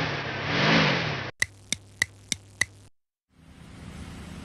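Car engine sound effect revving up and back down, cutting off about a second in. Then five sharp clicks about three a second over a low hum, a brief silence, and a steady faint hiss near the end.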